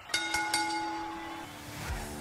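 Wrestling ring bell struck three times in quick succession, its tone ringing on for over a second. A rising swell comes in near the end.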